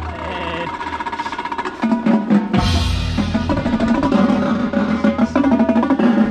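Indoor percussion ensemble playing its show: rapid drum strokes and pitched mallet-keyboard notes over a deep bass, with a loud crash about halfway through.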